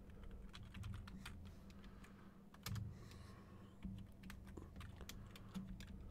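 Faint, irregular keystrokes on a computer keyboard, a quick run of separate key clicks as a short word is typed.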